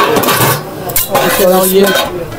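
Aluminium lid lifted off a large aluminium cooking pot, clanking metal on metal: a sharp clink at the start and another about a second in.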